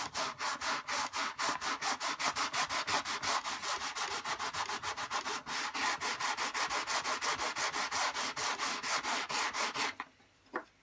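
Cloth rubbed briskly back and forth over the lightweight cone of a 15-inch RCF bass speaker driver, in a steady rhythm of about five strokes a second.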